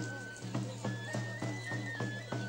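Procession music: a high pipe plays a simple melody, stepping between a few held notes, over a steady drum beat of about two to three strokes a second.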